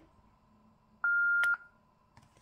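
Yaesu FTM-200D transceiver's key beep: a single steady high beep about half a second long, about a second in, with a sharp click near its end. It is the radio acknowledging a long press of the channel knob, which accepts the typed memory name.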